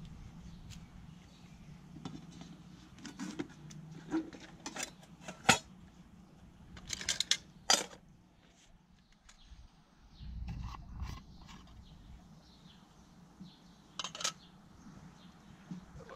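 Metal camping pans and stove parts being unpacked and set out: scattered clinks and knocks of metal on metal, loudest about halfway through, with a short low rumble later on.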